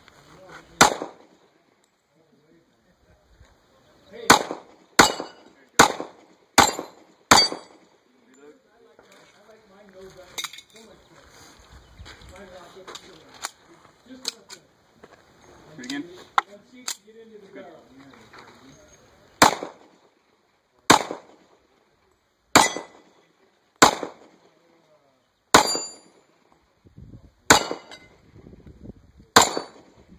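Semi-automatic pistol fired at steel targets, thirteen shots in all. After a single shot, five come in quick succession about three-quarters of a second apart. Then comes a gap of about twelve seconds with only faint clinks and handling sounds, and then seven more shots spaced about a second and a half apart.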